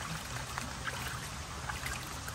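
Water trickling and splashing: a steady wash of noise with a few faint small drips.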